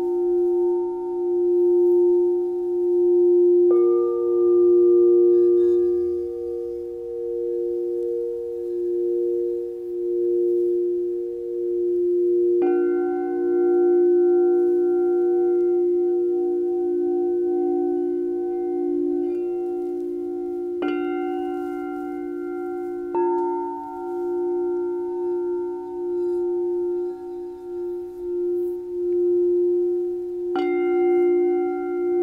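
Quartz crystal singing bowls struck with mallets, their pure tones ringing on and overlapping into a continuous, slowly wavering drone. A fresh bowl is struck about four seconds in, again near thirteen seconds, and twice more a little after twenty seconds.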